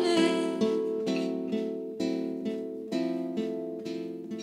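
Acoustic guitar picking single notes, one every half second or so, each struck and left ringing, slowly growing softer. A sung note ends just at the start.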